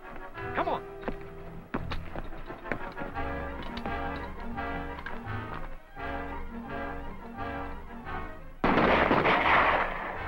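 Dramatic orchestral film score with a steady, pulsing rhythmic figure. Near the end it is cut through by a loud burst of noise lasting more than a second: gunfire on the soundtrack.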